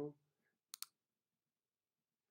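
A computer mouse button clicked once, heard as two short sharp ticks in quick succession a little under a second in, as the script is run; otherwise near silence.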